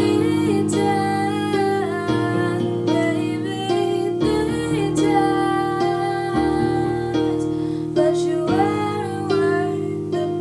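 A young woman singing a slow ballad, accompanying herself on an electronic keyboard with held chords that change about every two seconds.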